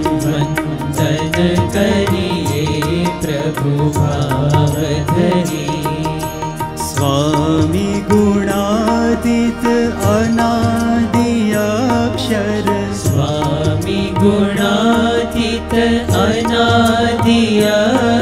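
Indian devotional kirtan: a male voice singing a slow, gliding melody, accompanied by tabla strokes, a held harmonium drone and a sitar-like string instrument.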